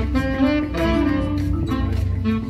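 Live instrumental music: a saxophone playing a sustained, legato melody over a steady low bass accompaniment.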